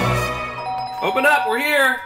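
Theme music fades out, then a steady two-tone chime sounds and a person yells loudly in long, swooping calls.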